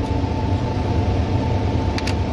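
Laminar airflow cabinet blower running: a steady low hum with a faint high whine.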